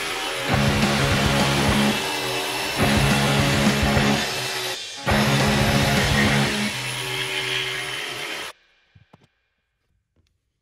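Background rock music with electric guitar and a steady beat, cutting off suddenly about eight and a half seconds in.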